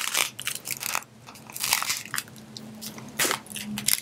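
A 160 latex twisting balloon squeaking and rubbing under the fingers as its nozzle is knotted, in short irregular squeaks and crackles.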